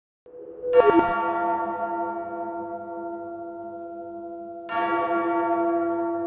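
Two deep bell strikes as an intro sting, the first led in by a short rising swell. Each rings on with several steady overtones and slowly fades, the second near the end.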